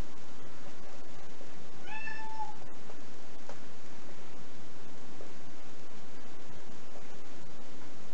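A house cat meowing once, about two seconds in: a short, level call from a cat wanting to be let into the room.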